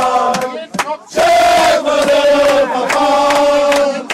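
Group of male voices chanting a football-chant-style song: short chanted syllables, then a long held sung note from about a second in.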